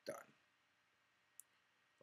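Near silence with one short, sharp, faint click about one and a half seconds in.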